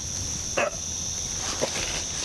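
Night-time insect chorus: a steady high-pitched trill of crickets, with two short falling calls about half a second and a second and a half in.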